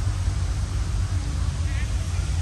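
Steady, fluttering low rumble of outdoor background noise, with faint voices in the distance near the end.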